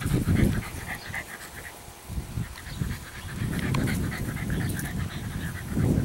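English bulldog puppy panting close by, in uneven bursts that ease off for a moment about two seconds in.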